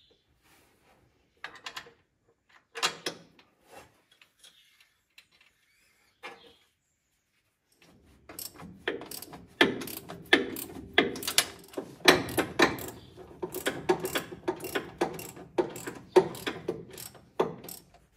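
Hand ratchet wrench clicking as a bolt on a steel linkage bracket is done up. A few scattered clicks and knocks come first, then rapid runs of ratcheting clicks from about halfway through.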